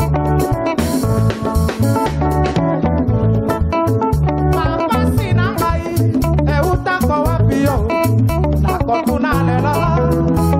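A live Congolese rumba band playing: electric guitar lines over a pulsing bass guitar and drums, with a voice singing over them through the middle of the passage.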